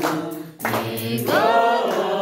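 A group of people singing together without instruments. The singing dips briefly about half a second in, then comes back with a note that slides up and is held.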